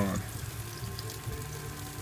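Fat sizzling and crackling on the skin of a rolled pork roast turning on a gas grill rotisserie, under a steady low hum.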